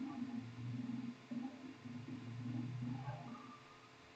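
Indistinct, muffled talking in the background, too faint to make out words, fading out near the end.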